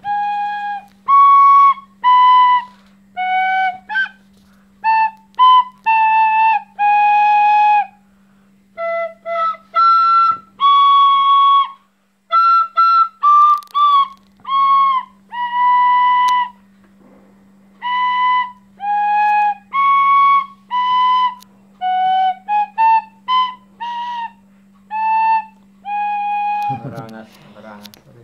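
A beginner playing a simple melody on a Serbian frula, a wooden shepherd's flute, in short, separate, halting notes with brief pauses between phrases. A faint steady low hum runs underneath, and a man's voice starts near the end.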